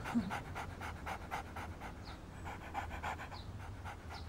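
A dog panting quickly and evenly, about six breaths a second, growing fainter about halfway through.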